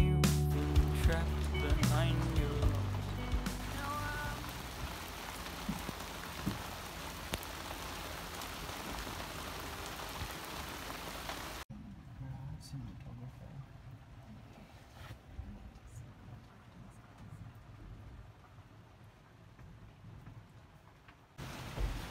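Background music ending in the first few seconds over a steady rushing of storm wind and rain. About halfway through it cuts to quieter rain on the yacht's cabin and porthole, with scattered drops, heard from inside.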